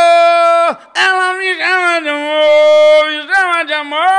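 A man singing unaccompanied, holding long, steady notes with short breaks between phrases, in an imitation of a band's singing style that he then calls 'muito Bob Esponja' (very SpongeBob-like).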